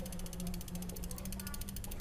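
Rear wheel's 7-speed freewheel ticking as the wheel spins, its pawls clicking in a rapid, even rhythm.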